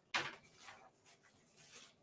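Handling noise as things are moved about while a graphics tablet is fetched: a sharp knock just after the start, then fainter rustles and bumps.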